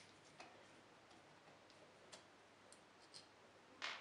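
Near silence, broken by a few faint ticks from a screwdriver working steel screws on a Single Action Army replica revolver as they are loosened.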